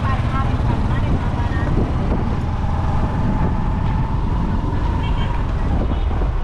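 Steady low rumble of a road vehicle running as it moves along a street, with a faint steady whine for a few seconds in the middle.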